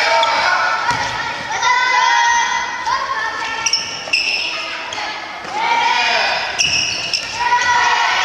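Many children's voices shouting and calling together in a large gym hall, with a few sharp thuds of a dodgeball being thrown, caught or bouncing on the wooden floor, about three in all.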